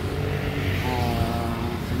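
Steady low rumble of roadside motor traffic, with a man's voice holding a drawn-out hesitation sound for about a second in the middle.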